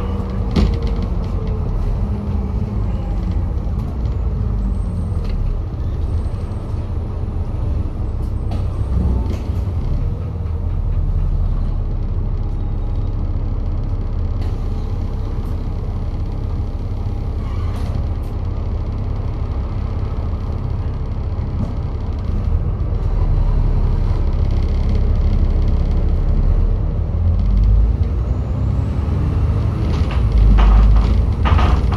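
Alexander Dennis Enviro400 double-decker bus's diesel engine and drivetrain heard from inside the upper deck while driving: a steady rumble whose engine note falls at first as the bus eases off, then climbs over the last several seconds as it accelerates. A few sharp knocks and rattles from the body come through.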